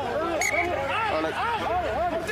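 Men's voices shouting short calls in quick succession, as rugby players do while a scrum packs down and is fed.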